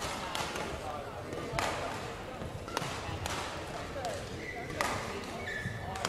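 Badminton racket strikes from a rally on another court, sharp knocks echoing through the hall about every one to one and a half seconds, with short shoe squeaks on the court floor and indistinct voices behind.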